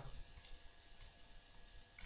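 A few faint computer mouse clicks, about half a second and one second in, against near silence: clicking through a right-click menu to pick the on-screen pen.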